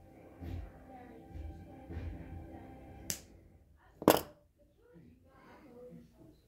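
Small wire cutters snipping the thin wire lead of an LED: two sharp clicks about a second apart, the second one louder.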